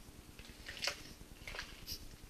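Faint crinkles of a plastic bubble mailer being held up in the hands, three short soft rustles in the second half.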